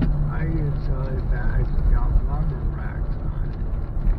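Steady low rumble and drone of a car in motion, heard from inside the cabin, with a person's voice talking indistinctly over it.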